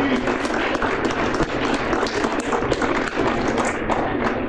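Audience applauding: steady, dense clapping from many hands.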